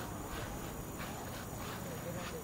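Faint evening ambience: crickets giving a steady high drone.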